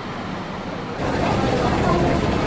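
Steady outdoor traffic noise from a bus station, then about a second in a sudden switch to louder, busier crowd ambience with people's voices.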